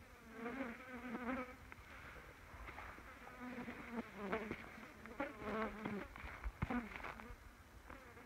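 Australian bush flies buzzing close around the microphone, their pitch wavering up and down as they circle, with a few short clicks among it.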